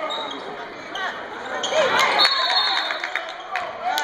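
Indoor basketball game: ball bouncing and knocks on the court, with shouts from the stands echoing in the gym. A referee's whistle sounds once, a short high blast just after two seconds in.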